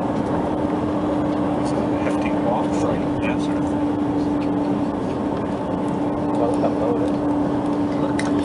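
Steady road and engine noise inside a moving tour bus on a highway, with a steady hum held throughout that stops near the end.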